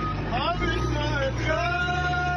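Voices chanting a song together, settling into long held notes about one and a half seconds in, over a steady low rumble.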